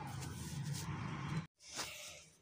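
A low steady hum with a few faint knocks. It cuts off abruptly about one and a half seconds in, and a faint brief knock follows.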